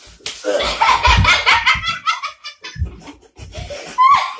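Several people burst out laughing loudly about a quarter second in, in quick repeated pulses. The laughter fades after about two seconds, with a few low thuds under it.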